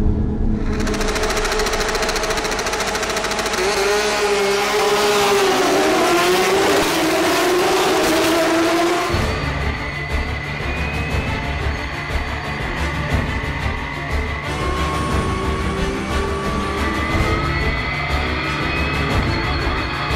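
Porsche 911 GT3 Cup race cars' flat-six engines at a race start: several cars revving and pulling away together, their pitches sliding up and down. About nine seconds in the sound changes to a single car's engine heard from inside the cockpit, a heavy low rumble that climbs in pitch as the car accelerates.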